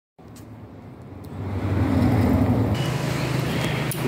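A motor vehicle engine running close by, a steady low rumble that grows louder about a second and a half in.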